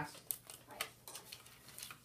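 Dry-erase marker on a whiteboard: a few short strokes and taps as a label is finished, under faint classroom murmur.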